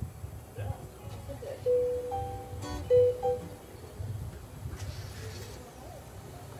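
A few single guitar notes, each held clear and ringing briefly; the loudest come about two and three seconds in. A low outdoor rumble runs underneath.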